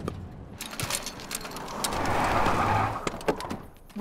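A station wagon driving up over dirt and coming to a stop, its engine and tyre noise swelling to a peak about two seconds in and then fading, with a few light clicks near the end.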